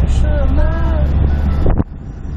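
Steady low rumble of a car driving, with wind buffeting the microphone; it breaks off abruptly near the end at a cut in the recording.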